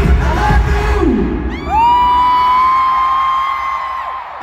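Pop music played loud through an arena's sound system, with the crowd heard beneath it; the music cuts off about a second and a half in. A single high, steady tone then swoops up, holds level and begins to drop away at the very end.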